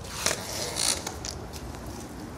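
Handling noise with rustling, and two short hissy scrapes, one about a quarter second in and one just before the one-second mark.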